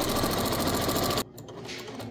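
Electric domestic sewing machine stitching quilt binding at a fast, even speed, then stopping abruptly about a second in.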